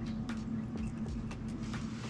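Faint small clicks and rustles of fingers working monofilament fishing line into the line clip on an aluminium spinning-reel spool, over a steady low hum.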